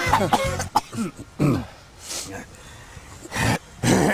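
A man coughing and clearing his throat in a few separate bursts, the loudest near the end. A short music cue ends in the first second.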